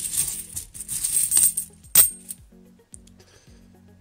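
Loose 50p coins jingling and clinking against each other in a cloth bag as a hand rummages through them. There is one sharp clink about two seconds in, then a few faint clicks.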